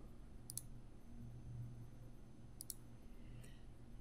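Two computer mouse clicks, about half a second in and again near three seconds, over a faint steady low hum.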